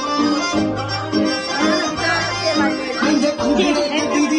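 Loud dance music played through a DJ's sound system across a party hall: a Punjabi pop track with a repeating bass line under a melody.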